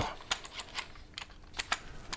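Small dry clicks and taps, a handful spread irregularly, as a compact flash head is slid and seated into a Bowens-mount adapter bracket by hand.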